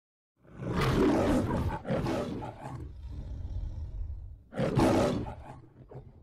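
The MGM logo lion roaring. A loud roar comes about half a second in and is followed at once by a shorter one, then a low rumbling growl, then another loud roar near the end that fades away.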